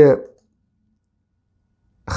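A man's voice finishing a word, cut off about a third of a second in, then near silence for the rest.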